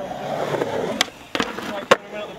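Skateboard wheels rolling over a concrete skatepark surface, with three sharp wooden clacks of the board about a second in, a little later, and near the end as the skater pops and lands a trick.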